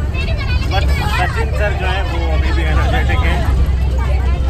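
Steady low rumble of a bus, heard from inside the passenger cabin, with people chattering over it.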